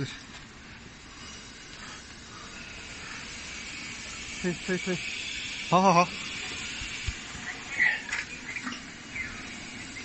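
Outdoor background with a steady high hiss and a few short vocal sounds. The loudest is a brief wavering call about six seconds in.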